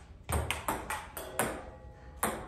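Ping pong ball being struck by paddles and bouncing on a wooden dining table, a quick series of sharp clicks about four or five a second.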